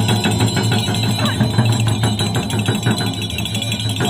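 Large Tibetan-style frame drums (nga) beaten in fast, even strokes, with a steady low drone of the drum heads ringing underneath.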